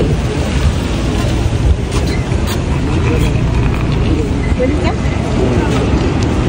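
Faint voices of people talking in the background over a steady low rumble.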